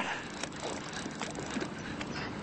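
Fishing reel working against a hooked, hard-pulling triggerfish: faint mechanical ticking over a steady hiss.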